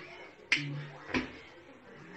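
Two sharp clicks, about two-thirds of a second apart, with a brief low hum between them.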